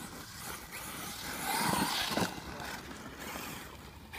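Agama Racing A8Te radio-controlled off-road car driving on a dirt track. Its motor whine swells and drops in pitch as it passes close, loudest about two seconds in, with a hiss of tyres on loose dirt.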